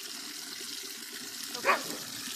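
Warm spring water pouring steadily from a fountain spout and splashing into a cup below. A single dog bark comes near the end and is the loudest sound.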